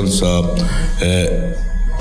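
A man's voice through a handheld microphone, speaking slowly with long held vowel sounds and a short hiss about a second in.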